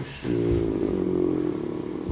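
A man's long, drawn-out hesitation sound, a low steady "uhh" held at one pitch for nearly two seconds while he searches for the next word.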